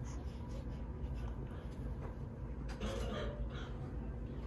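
Steady low room hum, with a brief soft breathy rustle about three seconds in from a baby stirring on a bed.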